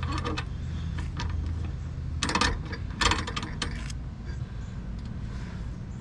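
Light metallic clinks and clicks of steel parts as the gear pack and bracket of a Lippert through-frame slide-out are fitted onto the shaft by hand, in a cluster a little over two seconds in and again around three seconds, over a steady low hum.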